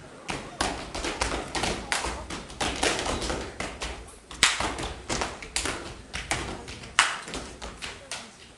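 Dancers' hands and feet striking a stage floor: irregular thumps and taps several times a second, with no music under them, and two louder hits about four and a half and seven seconds in.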